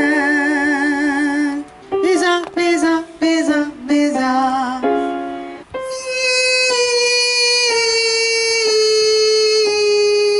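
A woman's voice doing vocal warm-up exercises. She holds a note with vibrato, then sings short sliding notes, and from about halfway through holds a long note that steps down in pitch about once a second.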